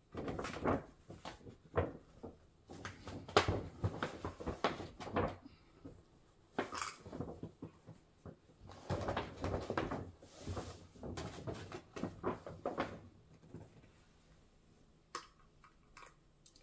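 Large paper shopping bags rustling and crinkling as they are handled, in irregular bursts with a few sharper clicks, quieter near the end.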